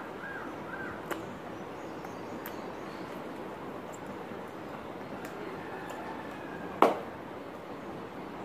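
Steady background hiss with three short, faint chirps in the first second and a couple of light clicks, then one sharp, loud clap a little before the end.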